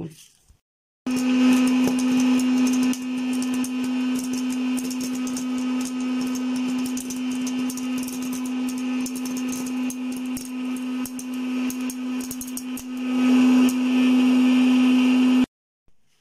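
Electric hot-air popcorn maker running: its fan motor hums steadily while corn kernels pop and the popped corn is blown out into a plastic bowl, giving many quick pops and ticks over the hum. It starts about a second in, grows louder near the end, and cuts off suddenly.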